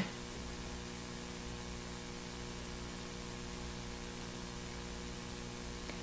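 Steady electrical hum with a faint hiss underneath, unchanging throughout. A brief short sound at the very start.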